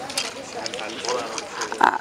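Speech only: quiet talking throughout, then a woman's voice starting up more loudly near the end.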